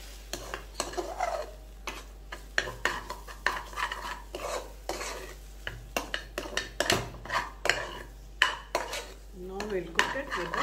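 A metal spoon stirring and scraping thick, cooked broken-wheat kichadi in a pressure-cooker pot, with irregular clinks and scrapes of the spoon against the pot's side and bottom.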